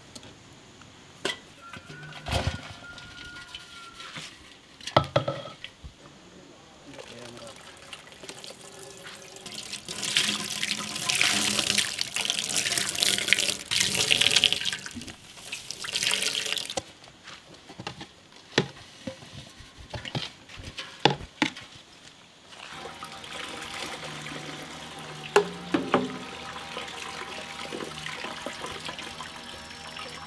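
Coconut milk pouring and splashing into a large steel pot as grated coconut is wrung out by hand through a cloth. The pouring is loudest in a long stretch mid-way, then settles to a steadier trickle, with a few sharp knocks against the pot in between.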